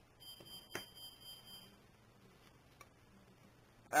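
A faint, steady, high-pitched electronic whine lasting about a second and a half, with one small click partway through, then only faint room tone.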